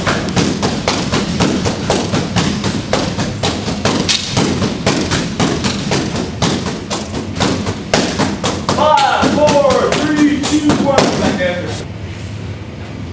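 Wooden sticks striking a padded freestanding punching bag in a rapid, even rally of about five hits a second. A voice rises over the strikes for a few seconds near the end.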